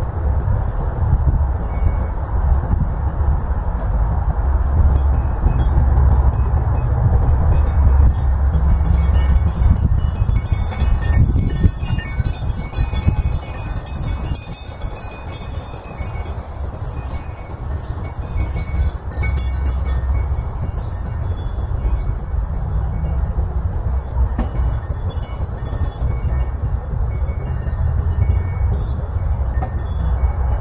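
Wind chimes tinkling on and off in a breeze, the pings busiest around the middle, over a steady low rumble of wind on the microphone.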